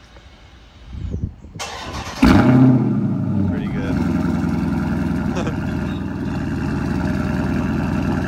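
Dodge Charger's 392 HEMI V8 cold start in a garage. The starter cranks for about a second, the engine catches with a loud flare of revs a little over two seconds in, then settles into a steady fast cold idle.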